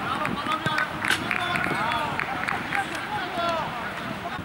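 Footballers shouting short calls to each other during play, over the sound of running footsteps, with a sharp knock about a second in.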